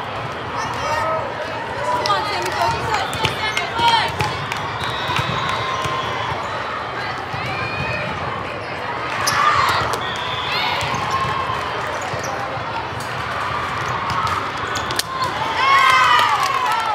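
Indoor volleyball rally in a large, echoing hall: the ball being struck and bouncing, sneakers squeaking on the court, and players and spectators calling out. A louder burst of shouting comes right at the end as the point ends.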